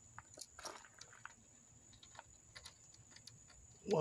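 Faint, scattered crackles and clicks of a cracked plastic solar-panel bezel and its potting glue being pried and peeled away from the glass edge by hand.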